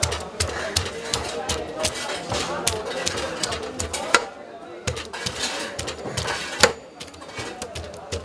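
A blade scraping the scales off a large carp on a metal tray: a quick, uneven run of short rasping strokes, with a few sharper knocks among them. Voices murmur behind.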